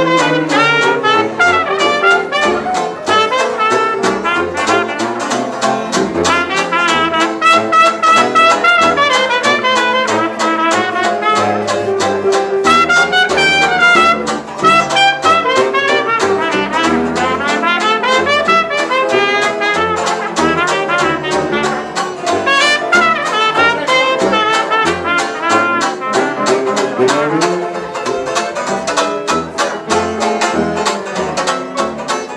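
Traditional jazz band playing an up-tempo tune, with a cornet taking the lead solo over banjo strumming on the beat and a bass saxophone bass line.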